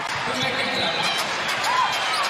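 A basketball is dribbled on the hardwood court over steady arena crowd noise. Two short squeaks come near the end.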